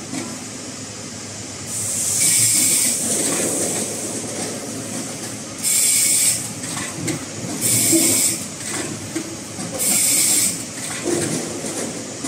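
An automatic fruit and vegetable counting and net-bagging machine running, with a steady mechanical rumble. Four bursts of compressed-air hiss, each under a second long, come roughly every two seconds as it cycles.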